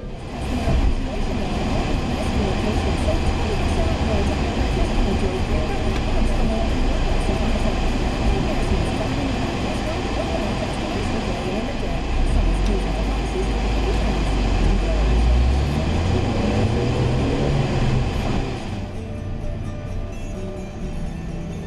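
Music with voices, as from a car radio, over a car engine heard from inside the car. The engine's low note rises as it speeds up about three quarters of the way through, then eases off.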